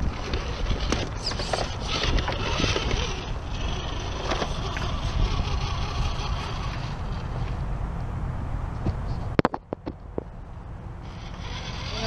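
Axial SCX10 radio-controlled rock crawler's electric motor and gears whining as it climbs over rock and a wooden plank ramp, over a steady low rumble. The sound drops away abruptly about nine and a half seconds in and rises again near the end.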